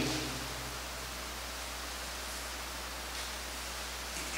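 Steady background hiss with a constant low hum, and a couple of faint rustles of paper sheets being handled.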